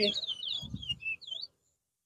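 Caged towa-towa finch singing a rapid run of sliding, twittering whistled notes. The song is scored by the count in a whistling match. The sound cuts out completely about one and a half seconds in.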